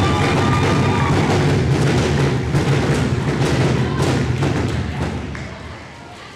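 Audience applauding with cheers, a dense patter of claps over a low rumble that fades away near the end.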